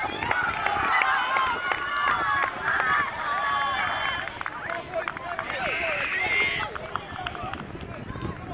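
Several high-pitched voices shouting and cheering excitedly at once, celebrating a goal, with one louder, higher shout about six seconds in.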